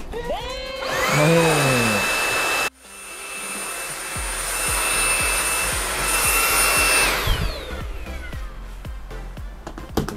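Xiaomi Mi Handheld Vacuum Cleaner 1C cordless stick vacuum running with a steady high-pitched whine. Its motor spins up in the first two seconds, cuts off abruptly near three seconds, runs again, and winds down from about seven seconds. Background music plays underneath.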